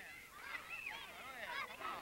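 A crowd of children shouting and squealing over one another, many high voices gliding up and down at once, more of them joining in near the end.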